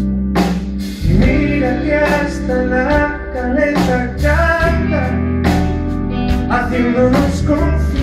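A live pop-rock band (acoustic and electric guitars, keyboard, bass and drum kit) plays a song. A wavering melody line moves over sustained chords, with regular drum and cymbal hits.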